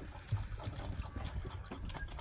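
Goat kids suckling milk from the teats of a bucket feeder, making a steady run of small irregular sucking and smacking noises.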